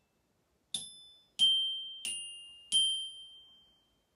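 Samick children's metal-bar xylophone struck with mallets: four single notes about two-thirds of a second apart, each left to ring out and fade, played as a short melodic phrase.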